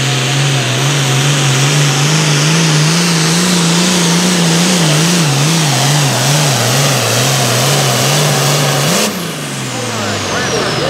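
Turbocharged diesel engine of an International 1066 super farm pulling tractor under full load dragging a pulling sled, its note wobbling up and down through the middle of the pull. Near the end the note rises briefly and then drops as the throttle is cut, and a high turbo whine falls away.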